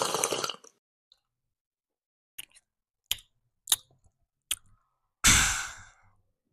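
Drinking from a cup held right up to a small microphone: the end of a long sip, then four short swallowing sounds, then a loud breathy 'ahh' exhale near the end that fades away.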